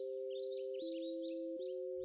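Soft background score of two held, pure-sounding notes; the lower note steps down about a second in and returns near the end. Faint bird chirps twitter high above the notes.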